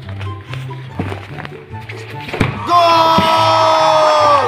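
Background music with a repeating low bass line. About two and a half seconds in there is a thump, the kick of a football. Right after it comes a loud, long held voice-like note that dips in pitch as it ends.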